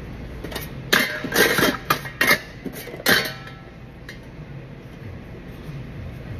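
A person coughing in a short fit, about five harsh coughs between one and three seconds in.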